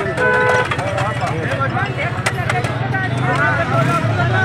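A vehicle horn sounds once, about half a second long, shortly after the start, over many people talking at once and a steady engine hum.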